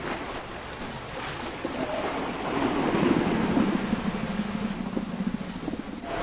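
Surf washing on a beach, with a low rumbling sound that builds from about two seconds in and holds until near the end.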